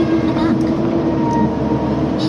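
Hydraulic excavator's diesel engine and hydraulics running steadily, heard from the operator's cab, with a constant hum.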